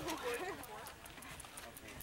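Several people talking over one another, indistinctly, with a run of faint light clicks running underneath.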